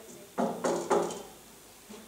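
Three quick knocks on a wooden stage-prop door, about a quarter second apart, with a short ring after each.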